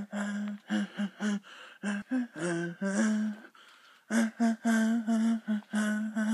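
A person's voice humming in short, choppy syllables on a fairly steady pitch, with breathy hisses between them.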